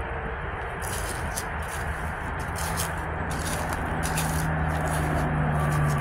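Footsteps crunching through dry grass and fallen leaves, with irregular small crackles. Under them a steady low hum comes in about two seconds in and grows louder.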